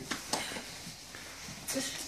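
Tissue paper rustling and crinkling in short bursts as it is pulled out of a gift, with a louder crackle about a third of a second in and another near the end.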